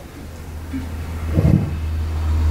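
A low steady rumble that grows louder about a second and a half in, where a brief soft knock sounds.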